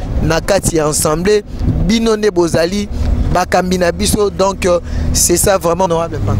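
A person talking, with the steady low hum of a moving car's engine and road noise heard from inside the cabin; the hum grows stronger about halfway in.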